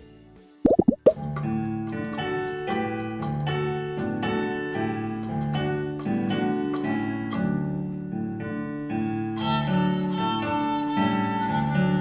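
A short pop-like transition sound effect about a second in, then a violin played by a young girl over piano accompaniment, the notes struck in an even pulse. The music grows fuller and brighter from about nine seconds in.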